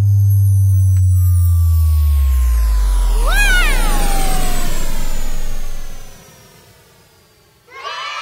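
Edited-in outro sound effect: a loud, deep synthetic tone sliding slowly down in pitch, with high tones gliding down alongside it and a short swooping note that rises and falls about three and a half seconds in. It fades out after about six seconds.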